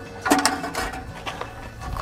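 An aluminum camper ladder being handled, with a sharp clack about a third of a second in and faint rattling after it.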